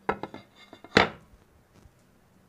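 Hard ceramic clatter as a glazed, fired tile is handled and set down on the worktable: a quick run of light clacks, then one louder knock about a second in.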